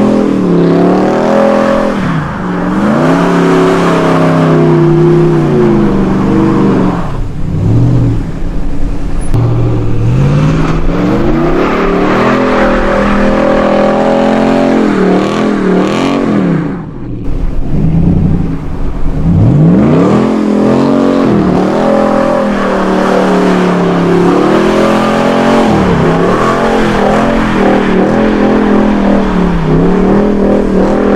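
Lifted Ram pickup's Hemi V8 revving hard and loud while it spins donuts in snow, its pitch climbing and dropping over and over with the throttle. It fades briefly about halfway through as the truck swings away, then comes back.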